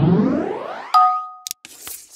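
Outro sound effects: a rising electronic sweep that ends about a second in with a sharp, ringing two-tone ding, followed by a few short clicks and a brief hiss.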